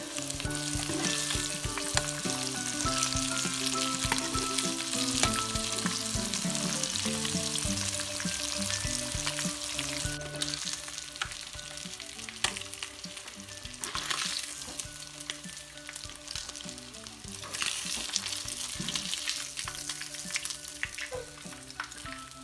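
Breaded bluegill fillets sizzling in hot vegetable oil in a frying pan, with a few clicks of metal tongs as the fillets are lifted out.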